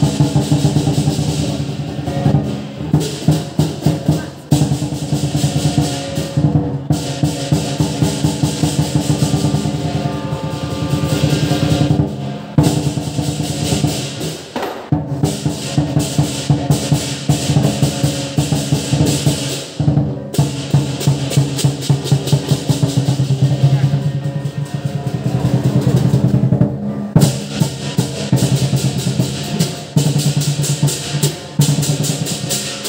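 Lion dance percussion: a large drum beaten in fast, dense strokes under clashing cymbals and a ringing gong, with a few brief breaks in the rhythm.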